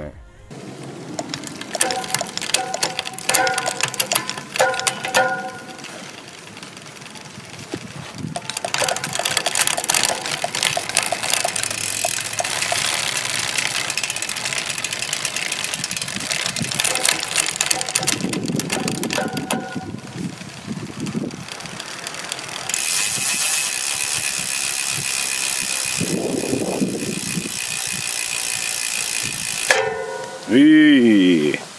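Rear hub freewheel of a road bike wheel ticking fast as the wheel spins on a stand, the ratchet sound of the Roval CLX 32 rear hub. Mixed in are the brief whirs of the SRAM Red eTap AXS 12-speed electronic rear derailleur shifting, with the chain running over the cassette.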